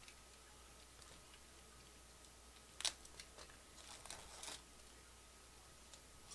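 A foil trading-card pack being torn open: one sharp crackle about three seconds in, then a short run of softer crinkles. The rest is near silence.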